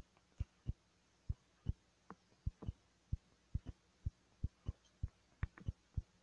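Faint, irregular soft clicks and low thumps, about three a second.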